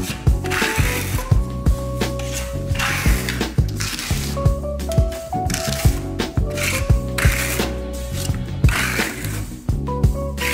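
Background music with a steady beat: repeating clicky percussion over sustained bass notes and a stepping melody.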